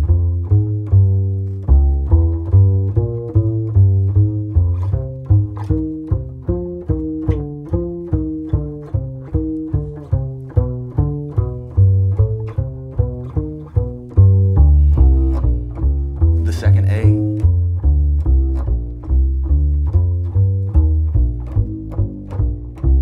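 Solo upright double bass played pizzicato: a slow walking bass line of evenly plucked low notes, roughly two a second, each note ringing until the next.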